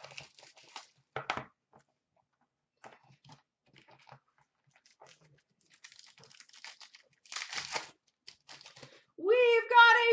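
A hockey card box being opened by hand and its sealed pack unwrapped: scattered light cardboard clicks and rustles, then a brief loud crinkling tear of the wrapper past the middle. A man starts speaking near the end.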